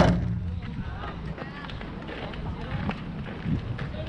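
A single sharp knock at the start, the loudest sound, followed by distant voices of players and spectators calling out across a baseball field.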